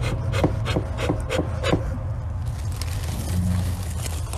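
Bee smoker's bellows pumped in a quick series of breathy puffs, about three a second, to get the burlap and pine-needle fuel smoking. The puffing stops about two seconds in, leaving a steady low hum.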